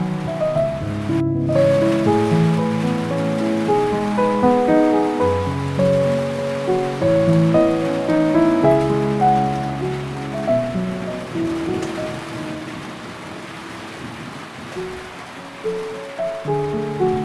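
Calm, slow piano music over a steady soft rain. The piano thins out and grows quieter over the last few seconds while the rain keeps on.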